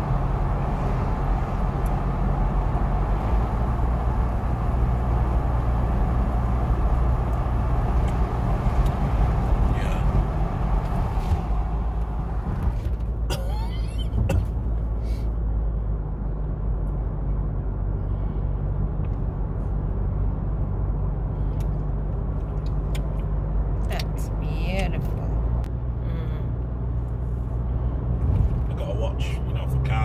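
Steady low drone of a car driving at motorway speed, heard from inside the cabin, with road and tyre rush that eases off about twelve seconds in. A few brief, faint sounds come and go in the second half.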